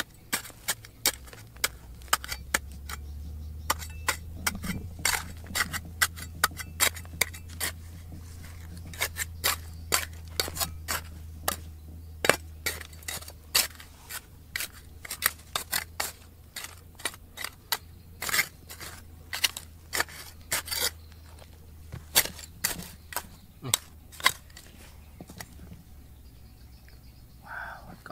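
Small metal hand trowel chopping and scraping into hard, stony soil: an irregular run of sharp clinks and knocks, about one to two a second, as the blade strikes rock and gravel. The strokes thin out near the end.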